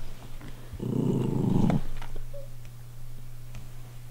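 A small dog growling once for about a second, a low, rough rumble starting about a second in.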